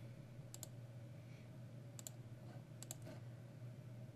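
Three quiet computer mouse clicks, each a quick double tick of button press and release, about a second apart, over a faint steady low hum.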